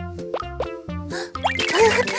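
Children's cartoon music with a steady beat, with several quick rising-pitch cartoon plop sound effects laid over it.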